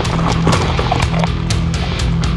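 Background music with a steady drum beat over a sustained bass line.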